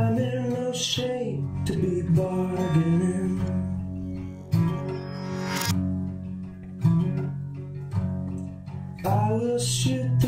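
Folk-rock song: a guitar strummed in chords, a fresh strum about every second, with a man's voice singing over it at times.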